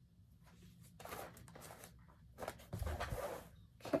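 Rustling of a large piece of Lugana cross-stitch fabric being lowered and handled, in irregular patches, with a soft thump about three seconds in as it is put down.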